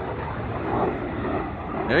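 Engine noise of a military jet flying low overhead, a steady rushing sound.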